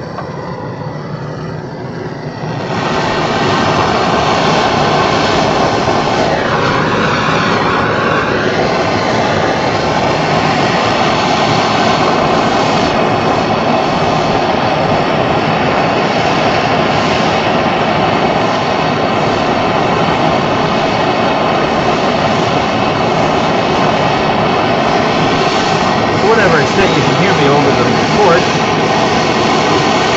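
Handheld gas brazing torch flame hissing steadily. It is quieter for the first two and a half seconds, then steps up in level and holds steady while heating the work.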